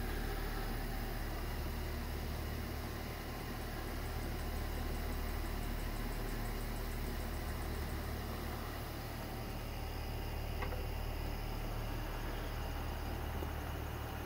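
Steady low mechanical hum, with one faint click about ten and a half seconds in.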